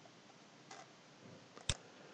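Faint computer clicks: a soft click a little under a second in, then one sharper, louder click near the end, as a mouse click selects a table cell on the slide.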